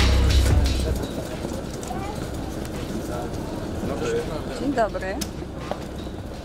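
Background music with a heavy bass stops about a second in, giving way to outdoor background noise with scattered snatches of voices and a single sharp click near the end.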